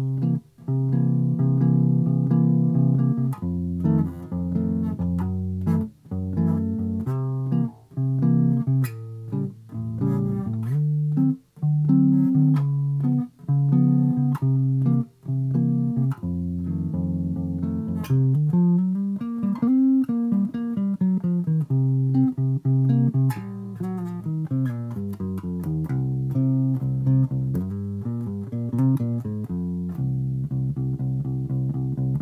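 Electric bass guitar played fingerstyle: a blues-scale solo line of single plucked notes in short phrases with brief gaps. About two-thirds of the way through, a run climbs and comes back down.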